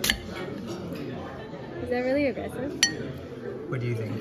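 A metal spoon clinks sharply against a ceramic dinner plate while food is dug out of pastry rolls. There is one loud clink at the start and another a little under three seconds in.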